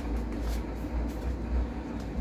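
Hands working a knobby mountain-bike tyre bead onto its rim: faint rubbing and scuffing of rubber against the rim over a low steady rumble.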